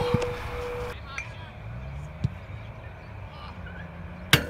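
A voice drawing out an 'oh' for about a second, then quiet open-air sound with a single sharp thud a little over two seconds in: a foot kicking an Australian rules football.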